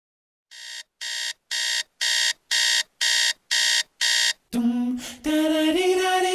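Electronic alarm clock beeping: eight short beeps, two a second, getting louder over the first few. About four and a half seconds in the beeping stops and music with singing begins.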